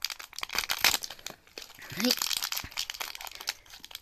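A clear plastic candy wrapper crinkling and crackling as fingers pull it open, a rapid run of small crackles, with a short vocal sound about halfway through.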